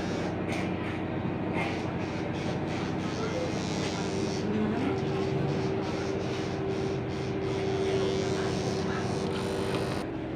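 Corded electric hair clipper fitted with a number 6 guard comb, running with a steady hum while cutting the top of the hair.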